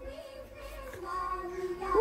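A battery-powered musical baby toy playing a children's song in a sung child-like voice, faint, with a held note growing louder about a second in.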